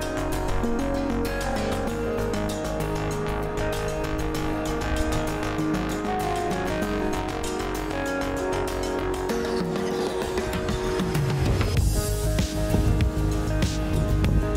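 Background music with steady sustained notes. A low rumbling noise joins under it near the end.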